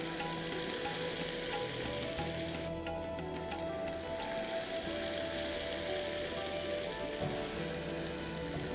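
Onion and chilli mixture sizzling in hot oil in a frying pan as tomato purée is poured onto it: a steady hiss, over soft background music with held notes.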